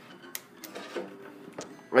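A few small clicks and rubs as a rubber band is looped around a pencil pressed across an acoustic guitar's strings, with the strings faintly ringing under the handling.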